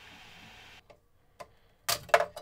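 Needle-nose pliers clicking and snapping off printed plastic support material at the base of a 3D-printed figure: a small click about one and a half seconds in, then a loud sharp snap near the end. Before that a faint steady hiss cuts off.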